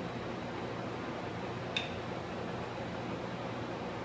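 Steady low room hum of a lab with a single light click a little under two seconds in, from micropipetting master mix into a small plastic tube.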